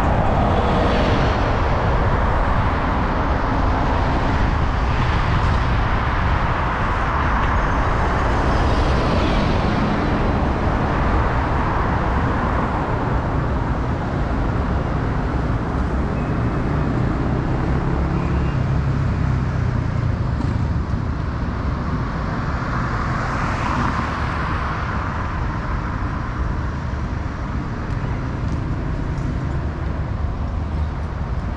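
City road traffic heard from a moving electric scooter, with a steady wind rumble on the microphone; vehicles swell past a few times, the first an articulated bus passing close near the start.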